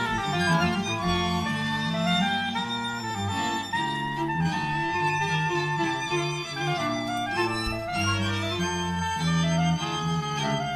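String quartet playing live chamber music with a jazz character, sustained bowed notes over a low cello line.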